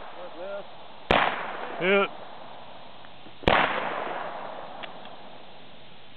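Two shots from a Smith & Wesson Model 29 .44 Magnum revolver, about two and a half seconds apart. The second shot leaves a long, fading echo.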